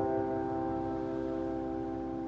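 Boston GP178 grand piano: a held chord ringing on and slowly fading, with no new notes struck.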